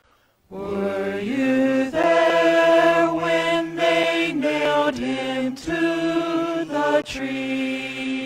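Small mixed vocal ensemble singing a cappella in sustained chords. The voices come in together about half a second in, with short breaks between phrases.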